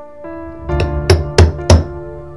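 Four sharp knocks about a third of a second apart, the last three loudest, over soft piano background music.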